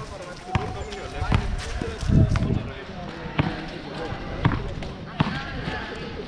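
Basketball bouncing on a hard court during one-on-one play, several sharp bounces at uneven intervals.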